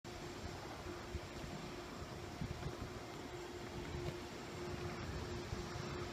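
Steady rumble and hiss of a moving vehicle heard from inside, with a faint unchanging hum.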